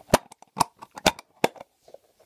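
A metal putty tin's lid clicking and knocking against the tin as it is pressed and worked to shut it: four sharp clicks about half a second apart, with fainter ticks between.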